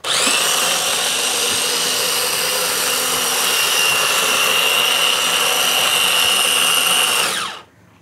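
Small electric blender running steadily, puréeing frozen raspberries with a splash of vinegar into a sauce. The motor is switched off about seven seconds in and spins down with falling pitch.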